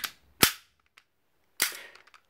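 Bolt of a WE Mauser M712 gas blowback airsoft pistol being racked by hand: two sharp metallic clacks about a second apart.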